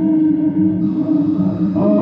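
Improvised experimental music from bowed string, trombone and electronics: a loud, steady held drone over a slowly wavering lower tone, with a higher tone entering near the end.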